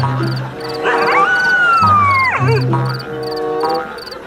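Night-time ambience of insect chirps repeating about four times a second over background music with low held notes. About a second in, a whistle-like comic sound effect glides slowly down in pitch for just over a second and ends in a quick wobble.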